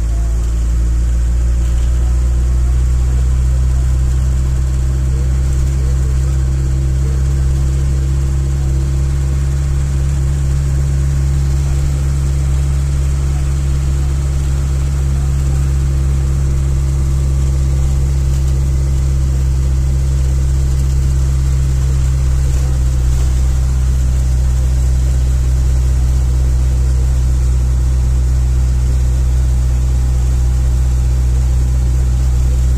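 Bus engine and road noise heard from inside the cabin: a steady, loud, low drone as the bus cruises along.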